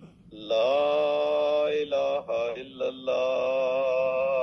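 A voice reciting the azan (Islamic call to prayer) in long, drawn-out melodic phrases, with short breaks about two and three seconds in, played over a phone call.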